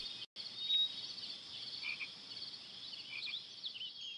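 Faint outdoor ambience with small, high, repeated chirping calls of small animals such as frogs, insects or birds, and a brief dropout in the sound near the start.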